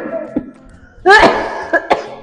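A woman coughs once, loudly and sharply, about a second in, after a short fading tail of laughter.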